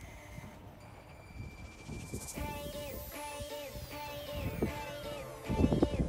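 Background music fading in about two seconds in, with a steady repeating beat and long falling sweeps. Near the end a louder low rumble comes in under it.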